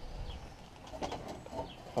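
Faint bird calls over low outdoor background noise, with a light click about a second in.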